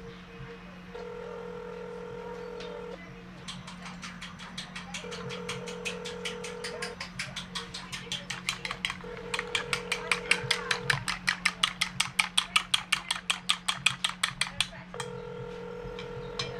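Eggs being beaten in a bowl: a quick, even run of sharp clicks lasting about ten seconds, over a low steady hum.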